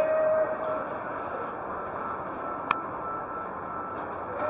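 Casino floor ambience: a steady wash of crowd noise with electronic, music-like machine tones, a held tone in the first second, and one sharp click a little after halfway.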